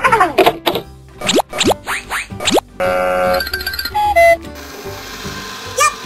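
Edited-in cartoon sound effects over background music: a run of quick sliding, whistle-like pitch glides, then a short buzzing tone about three seconds in and a two-note falling chime about a second later.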